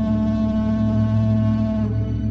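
Film soundtrack: a deep, steady droning tone with a low rumble beneath it, held at one pitch; its higher overtones fade away near the end.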